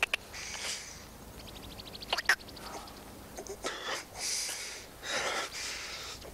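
A man gagging and spluttering in disgust in several short bursts, after a mouthful of something foul.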